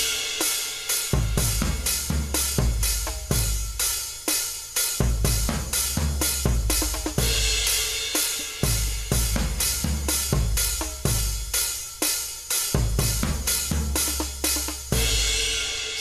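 A programmed drum beat from the Addictive Drums virtual drum kit playing back: kick drums with a long low decay, a steady hi-hat pattern and cymbals. The snare is weak and buried in the mix, hard to pick out.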